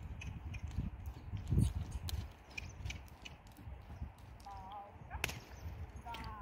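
A horse's hooves thudding softly on sand footing as it moves on the lunge circle, with a single sharp crack of the lunge whip about five seconds in.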